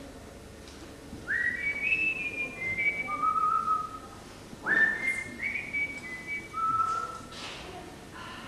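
A person whistling a short phrase of several clear notes that opens with an upward slide and ends on a lower note. The phrase is whistled twice, the second time about halfway through.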